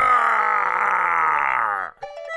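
Cartoon monster's vocalised cry, one long voiced call that slides slowly down in pitch and cuts off abruptly near the end.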